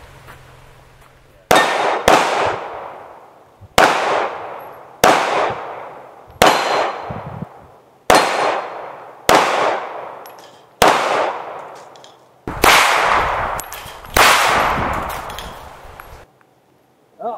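Ten pistol shots from a Colt Competition 1911 in 9mm, fired at an uneven pace about one to two seconds apart, each followed by a long ringing tail as steel plate targets are hit.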